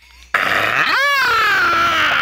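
A man's loud, raspy vocal imitation of an eagle's screech, starting about a third of a second in: it starts low, sweeps up high and stays high.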